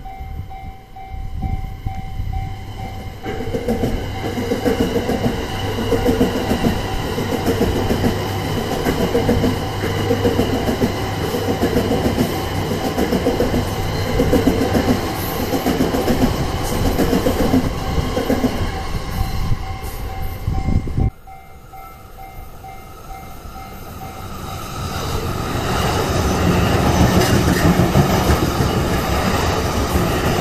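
An E235-series Yamanote Line electric train passes over the level crossing, its wheels clacking over the rail joints at about one beat a second, while the crossing's warning bell rings steadily. About two-thirds of the way in the sound cuts off abruptly, then another E235 train grows louder as it comes through the crossing close by.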